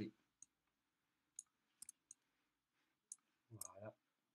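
Faint computer mouse button clicks, about six sharp single clicks at irregular intervals, over near silence.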